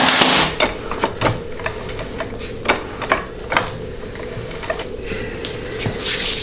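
A metal hand tool set down with a clatter, then scattered light metallic clicks and knocks from working the bare Ford C6 transmission by hand on the bench while the band clearance is checked, over a steady low hum.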